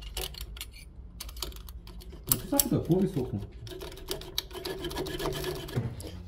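Irregular metallic clicks and knocks of a rusty car exhaust being pushed and rocked sideways by hand, with a faint voice mumbling in the second half.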